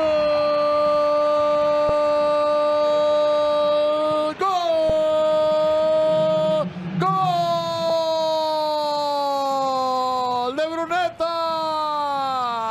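Spanish-language TV football commentator's drawn-out goal cry, a single vowel shouted and held in three long breaths of several seconds each, each sagging slowly in pitch, breaking into shorter calls near the end.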